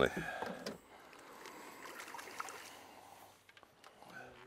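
Water splashing as a hooked sturgeon thrashes at the surface beside the boat. The splashing dies away after about a second, leaving only faint water and boat noise.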